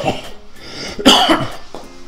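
A man blows out a lungful of hookah smoke, then coughs about a second in, the cough being the loudest sound; the smoke from the shisha draw sets off the cough.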